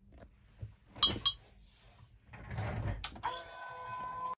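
A JK Hawk 7 slot car motor, wired to run backwards and submerged in water, starts after a sharp click about three seconds in and runs with a steady whine at low voltage, churning the water as its brushes bed in on the commutator.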